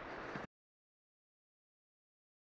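Faint background hiss that cuts off about half a second in, followed by complete silence: the sound track is muted.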